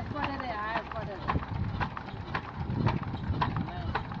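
Old single-cylinder stationary diesel engine turning slowly, with a regular knock about twice a second. Men's voices sound over it, most of all near the start.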